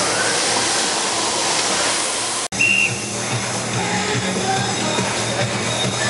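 Exhibition-hall din: a steady hiss of crowd and machinery, with music faintly mixed in. About two and a half seconds in, the sound cuts out for an instant and comes back with a steady low hum underneath.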